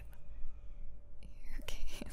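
A woman's soft, breathy whispering close to the microphone, mostly in the second half, as she talks a crying listener through slow breaths.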